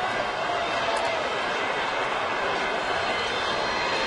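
Stadium crowd noise at a football game: a steady, even wash of many voices just after a touchdown.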